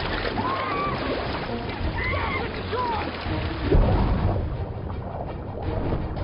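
Film soundtrack mix: a low rumbling music bed over a noisy wash of water, with a few brief distant voices calling out in the first half and a deep swell about four seconds in.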